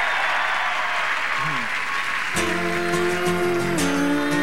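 Studio audience applauding. About two and a half seconds in, the song's first instrumental notes begin, ringing steadily as the applause dies away.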